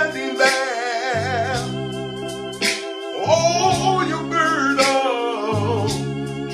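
A man singing gospel over sustained chords played on an electronic keyboard; his voice holds long notes with a wavering vibrato, and the bass chord changes about every two seconds.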